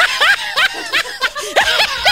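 Women laughing hard, a quick run of high-pitched 'ha' bursts, about five a second.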